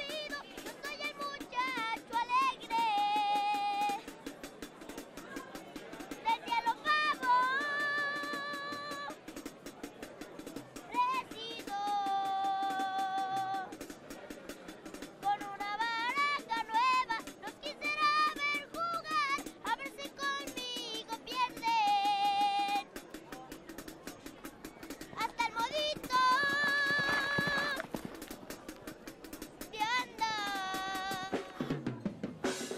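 A boy singing a Mexican regional song into a microphone, in phrases with long held notes, backed by a small live band with a drum kit keeping a steady beat.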